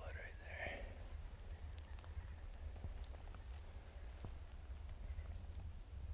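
Footsteps through dry leaf litter on a forest floor, with scattered faint crackles of leaves and twigs, over a low steady rumble on the microphone.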